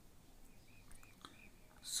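A very quiet pause in a small room, with a few faint clicks and brief faint high chirps near the middle; a man's voice begins right at the end.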